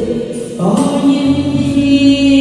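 A woman sings a slow Vietnamese ballad into a handheld microphone over a karaoke backing track. About two-thirds of a second in she starts a new note and holds it steady.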